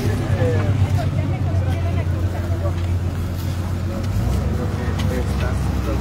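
Low, steady rumble of a heavy vehicle engine running close by, its pitch dropping about four seconds in, with people chatting in the background.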